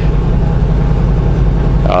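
Semi truck's diesel engine and road noise heard inside the cab while cruising at highway speed: a loud, steady low drone.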